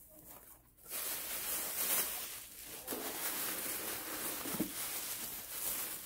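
Packaging rustling as a mailed parcel is unpacked by hand, starting about a second in.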